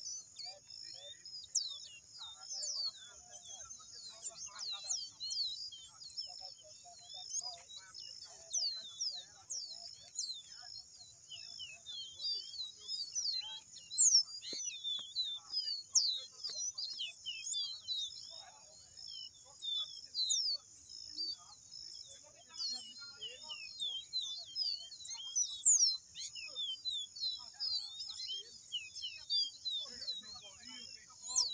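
Caboclinho (a Sporophila seedeater) calling over and over in thin, sharp, downward-sliding notes, several a second, some much louder than others, with a steady high hiss underneath.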